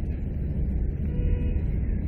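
Steady low rumble of background noise in a pause between spoken phrases, with a faint thin tone about a second in.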